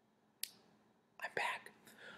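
A quiet pause with one short click about half a second in, then a man's brief, breathy whisper a little past the middle.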